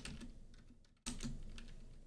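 Computer keyboard typing: a few soft key clicks.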